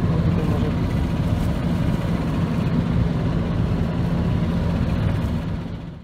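Tractor and pneumatic seed drill running steadily with a constant engine-and-blower hum, fading out in the last second.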